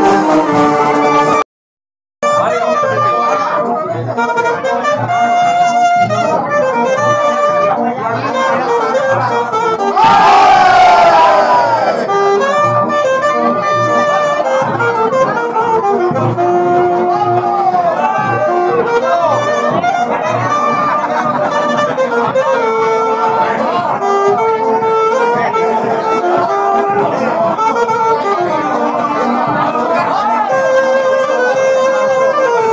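A wind band of saxophones and brass playing a tune over a steady bass beat. The sound drops out briefly near two seconds in, and a loud falling run of notes comes around ten seconds in.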